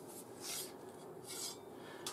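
Faint scraping of an 1879 Gras sword bayonet's blade being drawn out of its steel scabbard, metal sliding on metal, in two soft rasps about a second apart.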